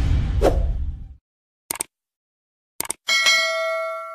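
Electronic intro music fading out in the first second, then two short clicks and a single bell ding that rings and dies away: the sound effects of an animated subscribe-button and notification-bell graphic.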